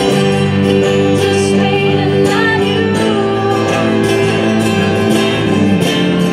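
A live acoustic band playing a song on guitars, piano and cello, with held notes and no pause.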